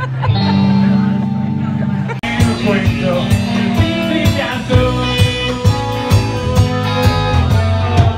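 Live rock band playing with electric guitar and bass and a singer: a held chord for about two seconds, then an abrupt change into the song with a regular beat and sung lines.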